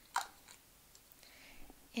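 Faint handling of a small plastic bottle of white Mister Huey's color mist and its dauber wand as the wand is dipped and worked in the bottle: a short click just after the start, then faint small wet ticks and rubbing.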